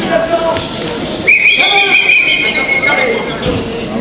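A shrill, steady signal tone lasting about two seconds, starting just over a second in and dipping slightly in pitch, over the voices of a crowded hall; the bout is stopped around it.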